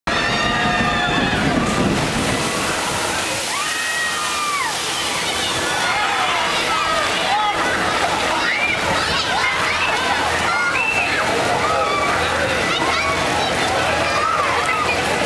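Water sloshing and splashing in a ride channel as a boat passes and throws a wave over a footbridge. Many people shout and shriek over the water from a few seconds in.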